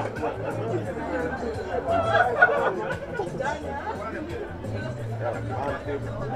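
Indistinct chatter of several spectators' voices over background music with a steady bass line, a little louder about two seconds in.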